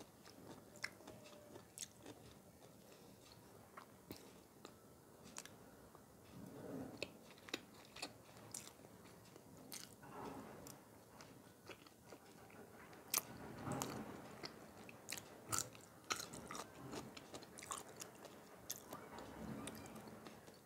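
Close-miked eating of white bean stew and rice: a metal spoon clinking and scraping in the dish, and wet chewing with many small mouth clicks, in several spells of fuller chewing.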